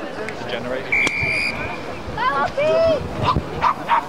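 A referee's whistle, one short steady blast about a second in, signalling the kick-off. A few short yelps and calls follow.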